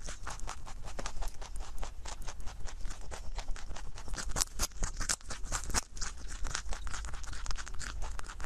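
A rabbit nibbling and crunching a baby carrot close to a microphone: a fast, unbroken run of small crisp crunches.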